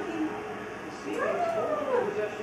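High, drawn-out vocal calls that slide up and down in pitch: a short falling call at the start, then a longer one that rises and falls over about a second.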